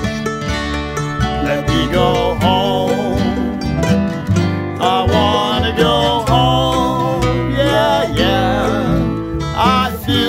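Acoustic string band of mandolin, guitars, upright bass and lap-style resonator guitar playing an instrumental passage, with some notes sliding and wavering in pitch.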